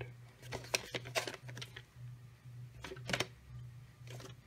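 A VHS tape case being handled and turned over in the hand: scattered light clicks and rustles of the case, over a steady low hum.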